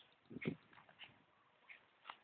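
Faint, short bird chirps, about one a second, with a dull thump about half a second in that is the loudest sound.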